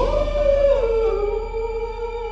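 Recorded soul-rock music playing: one long held note slides down in pitch about halfway through, over a steady backing.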